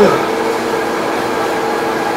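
Steady mechanical hum of a motorised treadmill running, with a constant low tone.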